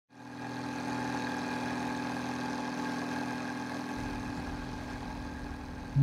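Boat engine idling with a steady hum; a deeper low rumble joins about four seconds in.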